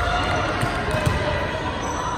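A volleyball bounced on a hardwood gym floor, a few dull thuds with the sharpest about a second in, under girls' chatter in an echoing gym.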